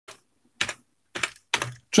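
Typing on a computer keyboard: about five short, uneven bursts of key clicks over two seconds, with brief quiet gaps between them.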